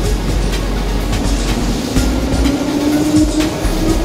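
Electric commuter train running along a station platform, its wheels clicking over the rail joints and a whine rising in pitch through the second half.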